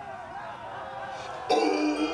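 Arena crowd noise of many voices. About a second and a half in, loud music starts suddenly.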